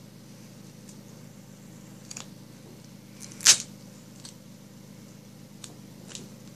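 A piece of duct tape torn by hand: one short, sharp rip about three and a half seconds in, with a few faint handling sounds before it.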